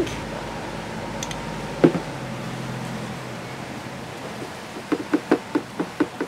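A steady low hum with a single knock about two seconds in, then a quick run of soft pats near the end as hands press dry seasoning onto whole fish in a metal baking tray.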